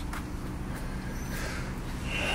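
A vehicle engine idling steadily, a low even hum.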